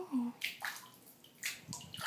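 Bathwater sloshing in a few short splashes as a hand moves through it and over a wet cat sitting in the tub.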